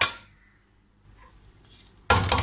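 A metal serving spoon clanks once against an aluminium pot of rice, a sharp strike that rings briefly and fades.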